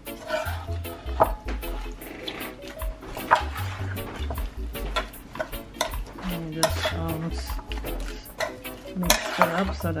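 A metal spoon stirring and scraping wet, marinated chicken and vegetables in a metal cooking pot, with repeated clinks of the spoon against the pot.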